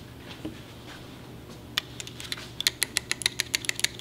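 Light, sharp clicking from hand work at an engine: one click, then a quick run of about a dozen clicks near the end, over a faint steady hum.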